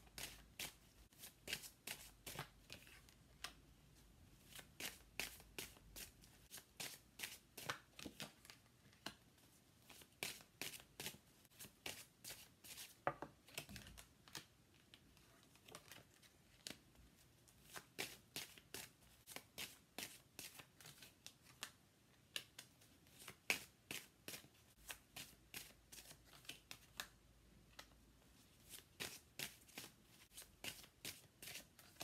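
Tarot cards being shuffled by hand and dealt out into a spread: a faint, irregular run of short card flicks and taps, several a second.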